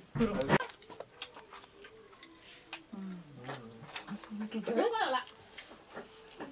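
A small child's voice babbling and whining in high, gliding tones, without clear words, with light clicks and taps throughout. A brief louder burst of sound comes right at the start.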